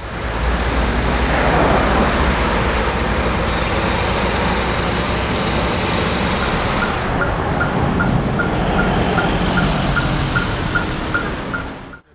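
Road traffic: cars, vans and heavy trucks driving past on a busy highway, with a steady low engine rumble. From about halfway in, a short high beep repeats evenly, a little under three times a second.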